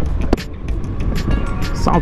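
Small Honda motorcycle engine running at low speed, with steady background music with a beat playing alongside.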